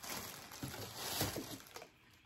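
Faint rustling and light handling noises of clothing items and their wrapping being moved about, fading out near the end.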